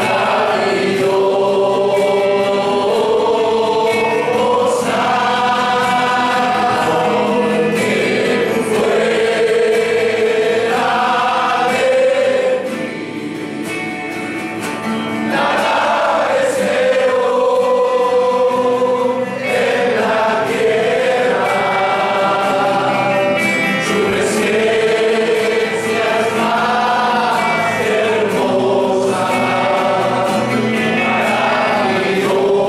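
A congregation sings a hymn together in long, slow, held phrases, accompanied by guitars. The singing drops back briefly about halfway through.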